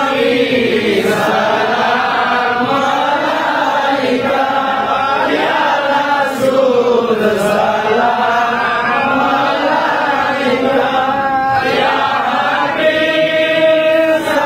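A group of men chanting an Islamic devotional chant together in unison, close to the microphone, their voices rising and falling together and settling on a long held note near the end.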